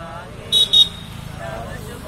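Two short, high-pitched horn toots in quick succession about half a second in, the loudest sound, over a group of men's voices chanting.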